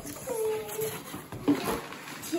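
A child's drawn-out wordless vocal sound early on, then rustling and a short knock about one and a half seconds in as a cardboard box and its packing paper are handled.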